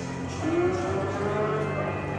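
A cow mooing: one long call that begins about half a second in and rises in pitch for about a second and a half.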